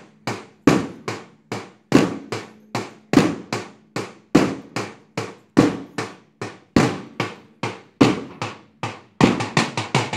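Large bass drum struck with a stick, beating a steady repeating pattern: one strong stroke followed by lighter ones, about every second and a bit, with quicker strokes near the end. It keeps the count for a seated group drill.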